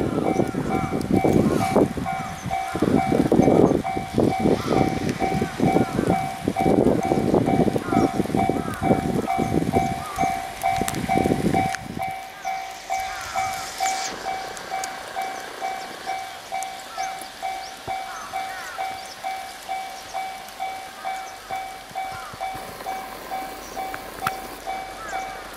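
Railway level-crossing warning bell ringing in an even two-tone beat, about three strokes every two seconds, signalling an approaching train. For the first half a heavy low rumbling noise lies under it, then cuts off abruptly about halfway through.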